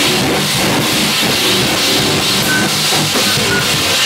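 Metal band playing loudly: distorted electric guitars over a drum kit with cymbals.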